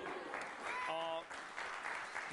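Studio audience applauding steadily, with a short voice sound about a second in.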